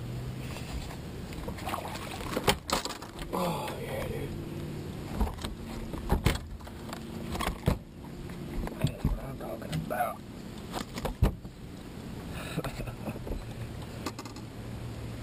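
Scattered sharp knocks and rattles as a hooked largemouth bass is fought, swung in and landed on the deck of a bass boat, the loudest strikes about two and a half seconds in and again near eleven seconds.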